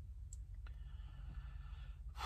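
Quiet car cabin: a low steady rumble with two faint small clicks, about a third of a second and two-thirds of a second in.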